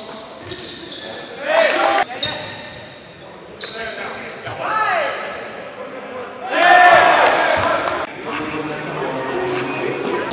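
Basketball game in a gym: a ball bouncing on the hardwood and players shouting. Three loud shouts come at about one and a half, five and seven seconds in, and the last is the loudest, as the ball goes through the hoop.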